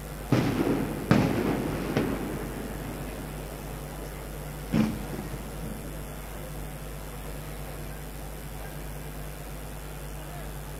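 Four loud blasts echoing across an open city square: three in quick succession in the first two seconds and a fourth about five seconds in, each trailing off in reverberation.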